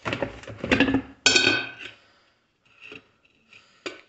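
Glass drip-coffee carafe being pulled from a coffee maker and handled: a clatter of knocks and clinks, then one ringing glass clink about a second in, followed by a few lighter knocks.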